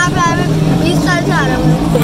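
A steady, low engine hum from a vehicle on the street, under short bursts of talk.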